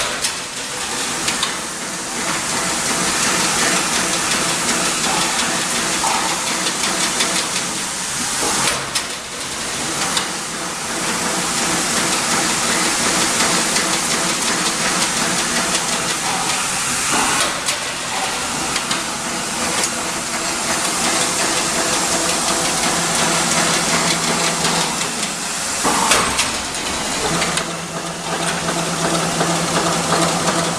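Double-wire chain link fence machine running and weaving wire mesh: a steady, dense mechanical noise that dips briefly about every eight seconds. A steady low hum joins in over the last few seconds.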